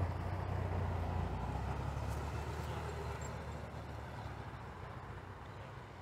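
Low engine rumble of a passing motor vehicle, fading away over about five seconds.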